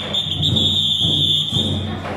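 A long, steady, high-pitched whistle-like tone held for about two seconds, cutting off just before the end, over the procession's drum music.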